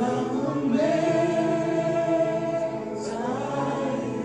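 Voices singing a slow worship song in long held notes, with a wavering held note through the middle.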